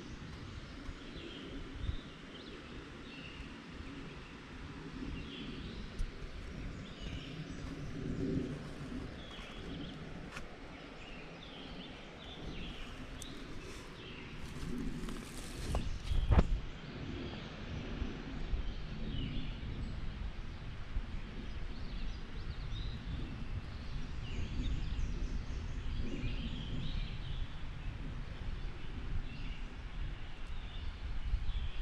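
Woodland ambience: birds chirping sporadically in the distance over a low rumbling background, with a single sharp knock about halfway through.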